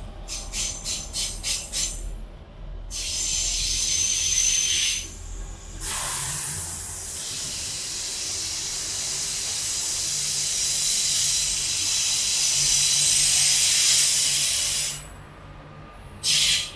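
Rapid ticking for the first couple of seconds, then a loud, steady high-pitched hiss. The hiss starts about three seconds in, breaks off briefly around five seconds, and cuts off suddenly near the end.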